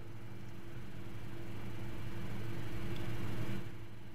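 Steady low hum with a faint hiss, slowly growing louder and falling back shortly before the end.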